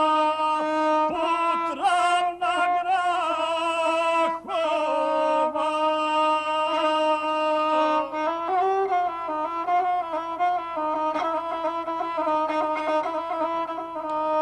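Gusle, the one-string bowed folk fiddle, playing a steady drone-like line under a male guslar's chanted epic singing, the melody wavering and ornamented, shifting about eight seconds in.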